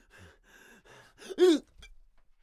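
A 65-year-old man's fight reaction: three quick, breathy pants, then a short, loud, pained cry about one and a half seconds in, its pitch rising and then falling.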